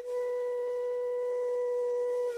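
Intro music: a flute-like wind instrument holding one long steady note, after a brief break at the very start.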